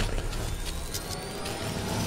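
Intro sound-design effects: a steady rushing whoosh over a low rumble, with a faint tone rising slowly through it.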